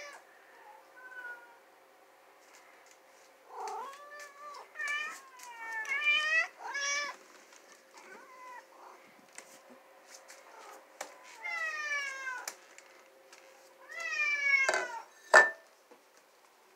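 House cats meowing over and over at feeding time, begging for the food being dished out. There are several short meows, then a long falling one, then a final pair, over a faint steady hum, with one sharp click near the end.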